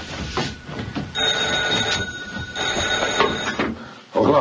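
Old wall-mounted telephone's bell ringing in bursts of about a second, with short gaps between.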